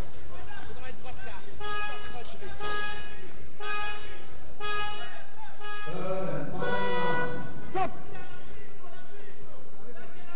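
A horn sounds five short blasts on one steady note, about a second apart, then one longer blast.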